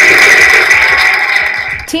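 A group of people applauding and cheering, the clapping thinning out and fading near the end.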